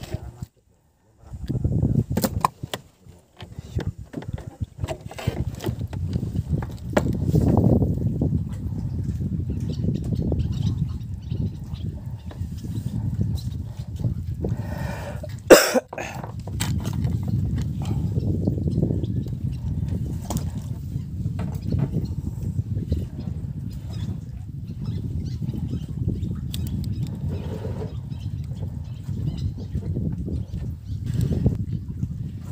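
Low, uneven rumble of wind on the microphone in an open boat, with scattered small clicks and knocks from handling the rod and boat. A single sharp, loud knock comes about halfway through.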